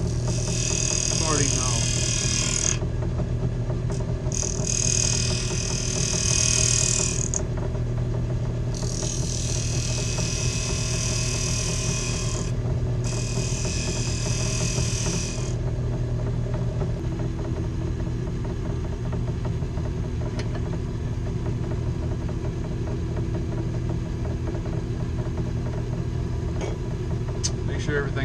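Wood lathe motor running steadily while a skew chisel takes four slicing passes, a few seconds each, across the face of a spinning pine box lid. These are finishing cuts to clean up torn grain. The cutting stops a little past halfway and the lathe runs on by itself.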